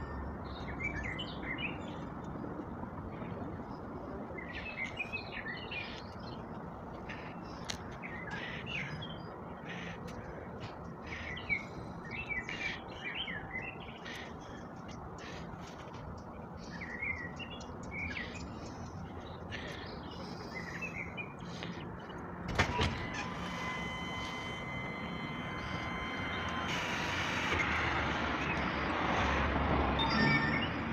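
Small birds chirping repeatedly over a steady low rumble from a large construction site. About three-quarters of the way through, a sharp click is followed by a steady high mechanical whine for a few seconds, then a hissing noise that grows louder near the end.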